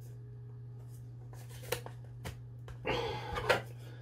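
Hard plastic diorama pieces handled and fitted together: a few light clicks, then a short rustling scrape near the end, over a steady low hum.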